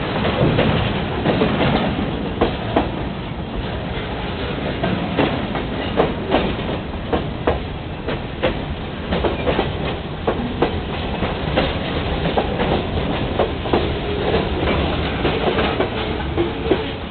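Freight cars of a passing train rolling by close, a steady rumble with frequent sharp clacks of the wheels over the rail joints.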